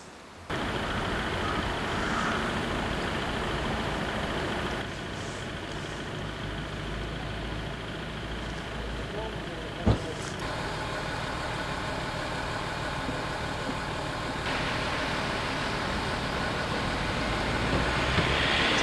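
Steady outdoor street and vehicle noise with faint voices, from several spliced shots, so the background shifts abruptly a few times. There is a sharp click about ten seconds in.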